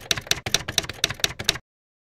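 Typewriter keys striking as a sound effect, a quick run of clicks about six or seven a second that stops suddenly about one and a half seconds in.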